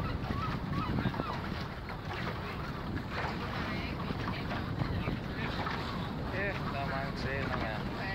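Low rumble of wind on the microphone and the boat, with several wavering, moaning calls from the seal colony from about three seconds in, clearest near the end.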